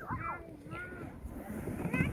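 Faint, distant children's voices calling out in the first second, over a steady low rumble of wind on the microphone.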